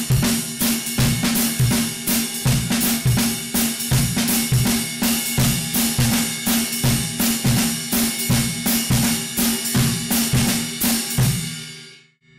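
Drum kit playing a jazz swing pattern with the right hand on the cymbal while the bass drum and hi-hat keep a steady ostinato, and the snare plays a syncopated line of dotted-eighth/sixteenth figures over the quarter note. The playing stops about a second before the end and the drums and cymbals ring out.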